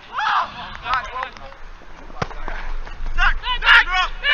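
Men shouting across an outdoor football pitch in short calls, loudest near the end. A single sharp knock about two seconds in, typical of a football being kicked.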